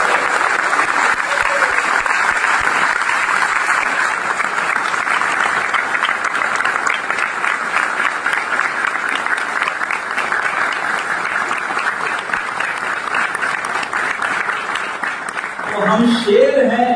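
Audience applauding, a dense, steady clapping that holds at an even level throughout.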